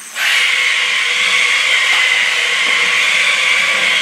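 Maisto Tech RC McLaren P1 toy car's small electric motor and gears whirring steadily as it drives across a hardwood floor, starting just after the beginning.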